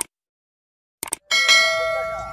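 Sound effect of a subscribe-button animation: a short mouse click, two more clicks about a second later, then a bright notification-bell chime that rings out and slowly fades.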